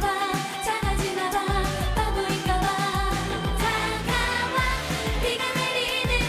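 Women singing a K-pop dance song live into handheld microphones over a backing track with a steady kick-drum beat of about two beats a second.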